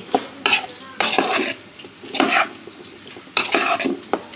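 Crisp chopped lettuce being tossed in a large bowl with a metal spoon, in about five separate rustling, crunching strokes, with the spoon now and then scraping the bowl.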